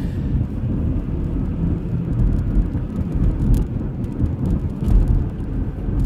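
A car driving along a street, heard from inside its cabin: a steady low rumble of engine and road noise.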